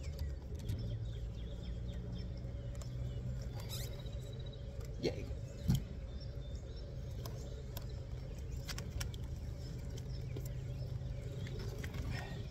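A steady low mechanical hum with a faint higher steady tone, broken by a couple of short knocks about five and six seconds in.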